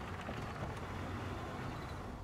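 Steady low rumble of a car, with no distinct events.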